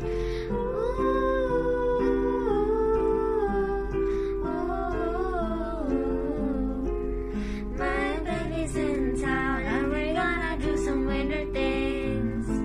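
A young girl's voice humming a slow melody without clear words over a backing track of acoustic guitar chords.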